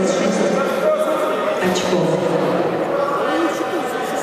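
A man speaking indistinctly, without a break.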